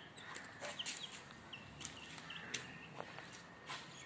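Young chickens (chicks) peeping, a string of short, high calls repeated throughout, with a few sharp clicks or taps between them.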